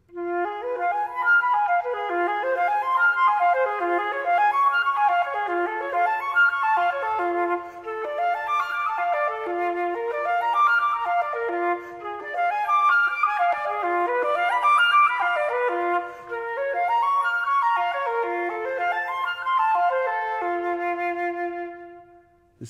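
Gold concert flute played solo: a practice exercise of quick arpeggio runs, each climbing from a low note and falling back, about one every two seconds, through the whole passage.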